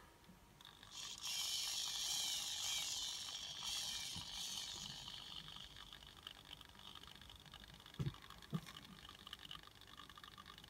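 Faint scraping and rattling as the servo potentiometer and its wiring are worked into place in a 3D-printed robot arm's shoulder joint, strongest for the first few seconds and then fading, with two small knocks near the end.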